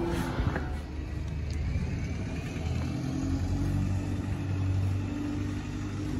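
A motor vehicle's engine running close by: a low steady rumble, with a held hum through the second half.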